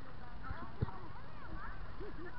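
Distant children's voices calling out across an open field, with a single dull thump a little under a second in.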